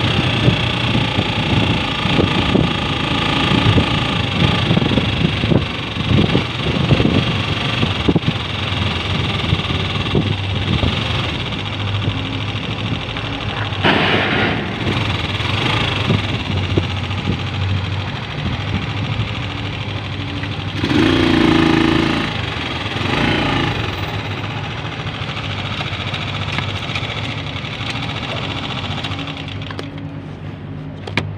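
Motorcycle engine running under way, with steady road and wind noise. A brief louder tone comes about two-thirds of the way through, and the level eases near the end.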